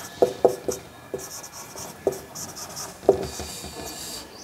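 Marker pen writing on a whiteboard: a run of short, irregular strokes and taps as letters are drawn, with a faint scratchy hiss between them.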